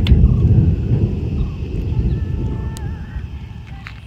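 Low rumble of a thunderstorm, loudest at the start and fading away over a few seconds.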